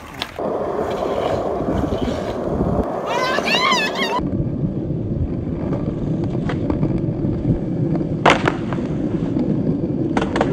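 Skateboard wheels rolling steadily over pavement, with one sharp clack of the board hitting the ground just past eight seconds in.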